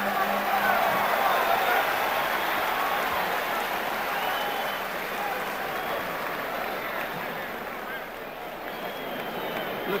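Large arena crowd cheering and chattering between rounds of a boxing match, a dense steady roar that eases somewhat toward the end.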